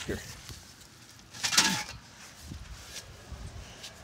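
A shovel being pulled out from under a wooden deck: one short, loud scrape about one and a half seconds in, then a soft knock about a second later.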